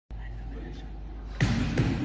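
Two sharp bangs about half a second apart, the first the louder, over a steady low hum.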